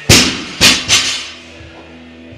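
Gym equipment hitting the floor: three sharp impacts in under a second, the first the loudest, over background music.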